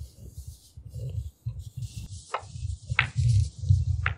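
Snooker arena background: an uneven low rumble with faint hiss, and three light, sharp clicks in the second half, the last right at the end.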